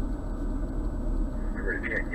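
Steady low engine and road rumble heard inside a BMW M240i's cabin as it drives through the course.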